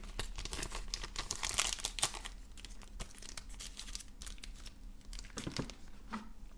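Plastic crinkling and rustling with small clicks, as graded card slabs and their plastic wrapping are handled. It is busiest for the first two seconds, then turns to occasional rustles.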